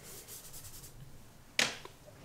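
Faint scratchy strokes of a blue pigment stick dragged on dry sketchbook paper, then a single short swish about one and a half seconds in.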